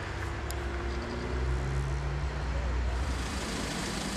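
Vehicle engine running with a steady low hum, over road traffic noise that grows louder about three seconds in.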